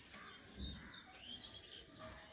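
Faint bird chirps outdoors: several short, high calls in quick succession over low background noise.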